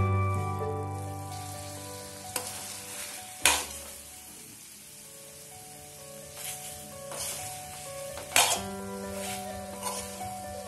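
Pork and dried bamboo shoot sizzling in a frying pan while a metal spoon stirs them, with sharp clinks of the spoon against the pan about three and a half and eight seconds in.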